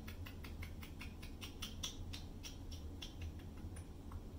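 A quick, even run of small clicks, about six a second, that stops shortly before the end, over a low steady hum.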